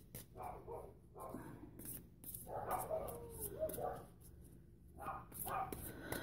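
Dogs barking in several faint short bouts, the longest one a little past the middle: a small house dog set off by the big dogs next door.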